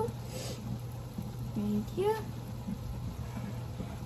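Corn frying down in butter in a skillet, a faint steady sizzle over a low hum, with a short voice about halfway through.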